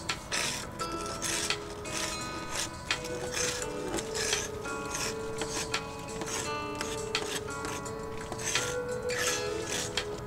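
Background music with long held notes, over a string of short scraping strokes as a long-handled paint scraper pulls flaking paint off wooden wall boards.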